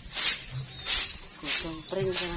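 A broom sweeping over grass and dirt in short, even swishes, about two strokes a second. A voice comes in near the end.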